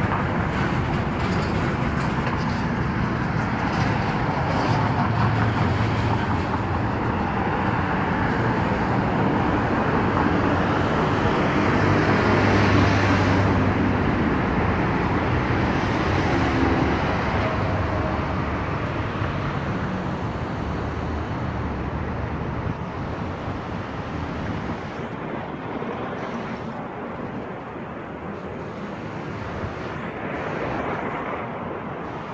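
Road traffic on a wide multi-lane city road: a steady rush of cars passing, with one engine going by close about twelve seconds in, then the traffic easing off toward the end.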